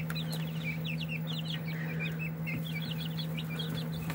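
A brood of young chickens peeping: many short, high cheeps overlapping without pause. A steady low hum runs underneath.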